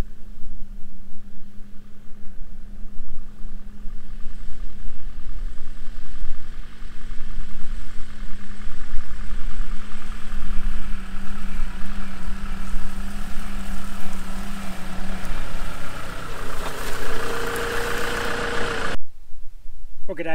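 A 2007 Land Rover Defender's 2.4-litre Puma four-cylinder turbodiesel running as the vehicle drives slowly up a grassy track toward the microphone, growing louder as it draws near. The sound cuts off suddenly about a second before the end.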